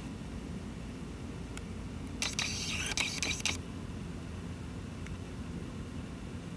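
Steady low room hum, with a brief rustle and a few clicks about two to three and a half seconds in.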